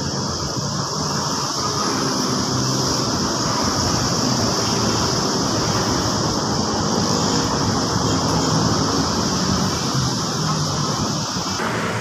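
Steady outdoor din of a distant engine droning, mixed with wind and water noise, with a high steady hiss that cuts off near the end.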